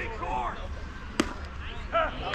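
Background voices talking, with one sharp smack about a second in.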